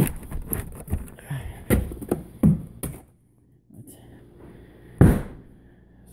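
A glass storm door being opened and passed through, with footsteps: a run of sharp knocks and clicks, a brief hush about three seconds in, then one loud thump near the end.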